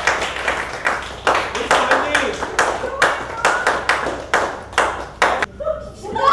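Irregular sharp claps, about three a second, with voices calling out underneath; the claps stop shortly before the end.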